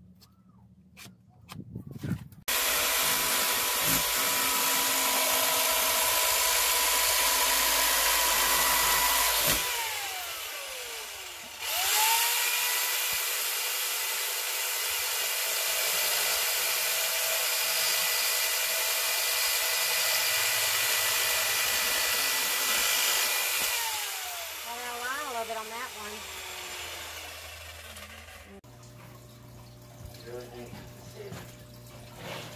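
Corded jigsaw cutting a thin beadboard panel. The motor starts about two seconds in and runs steadily for about seven seconds, winds down, then starts again with a rising whine. It runs about twelve seconds more before winding down with a falling whine near the end.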